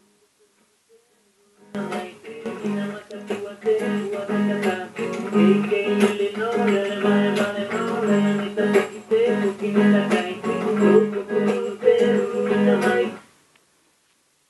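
Recording of a traditional Fataluku song from Timor-Leste played back over the hall's sound system: a voice singing a melody over a repeating plucked-string accompaniment. It starts about two seconds in and fades out near the end.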